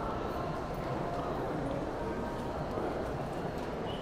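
Shopping-mall ambience: a steady murmur of shoppers' voices in a large echoing hall, with footsteps on the tiled floor.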